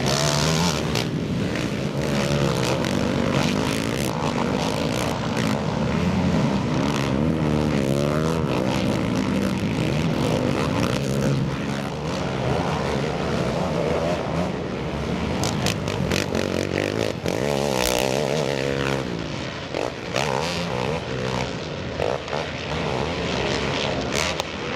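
Racing ATV engines revving up and down over and over as the quads accelerate and back off around a dirt motocross track, with a few sharp knocks in the second half.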